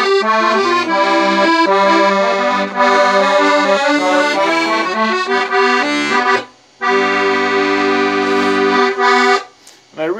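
Beltuna Alpstar 38-key, 96-bass piano accordion playing a short tune, with right-hand melody and chords over left-hand bass. About six and a half seconds in it breaks off briefly, then holds one full chord with bass for over two seconds, which stops shortly before the end.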